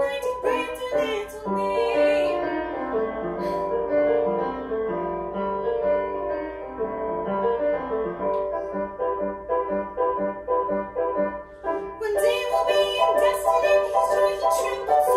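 Piano accompaniment playing an instrumental interlude of a classical art song. A female operatic voice finishes a phrase about a second in and comes back in near the end.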